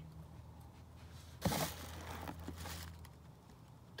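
A raccoon scrabbling against a screen door: a sudden knock about a second and a half in, then about a second and a half of scratchy rustling that fades.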